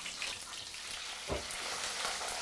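Pabho fish (butter catfish) frying crisp in hot oil in a wok: a steady sizzle, with one short knock about a second and a half in.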